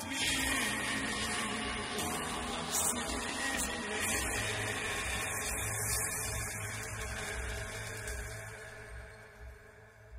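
A live band's final chord ringing out under audience applause, the whole sound fading away over the last two seconds or so.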